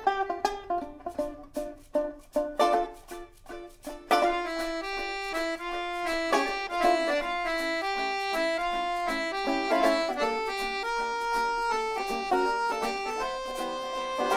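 Instrumental intro of a folk song: picked banjo and plucked strings alone for about four seconds, then an accordion comes in playing a held melody over them.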